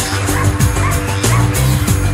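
Background music with a steady beat and bass, with a dog's short high yips or barks repeating over it.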